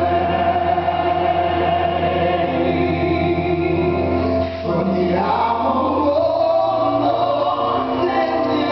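Live duet singing of a slow ballad, amplified through a hall PA: a man's voice holds long notes over steady instrumental accompaniment. About four and a half seconds in there is a brief break, then the next phrase begins and rises in pitch.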